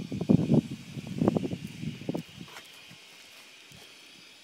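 Footsteps on paving stones: a short run of irregular steps that stops about two seconds in.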